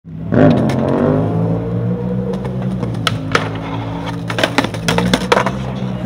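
Skateboard rolling on concrete, a steady low wheel rumble broken by several sharp clacks and cracks of the board and wheels, with a loud sweeping sound near the start.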